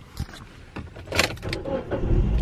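Car starter motor cranking, with the engine catching and a low engine rumble setting in right at the end. The battery may have been run down by headlights left on, but the engine starts.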